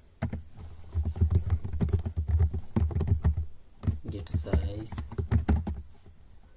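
Fast typing on a computer keyboard: a steady run of key clicks with a brief break past the middle.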